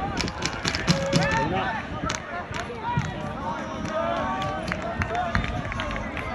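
Football spectators and players shouting and calling over one another at pitch side, with a few sharp knocks in the first second or so.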